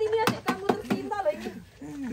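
Young people talking briefly in overlapping voices, with a few short knocks in the first second. The voices fade to a quieter moment near the end.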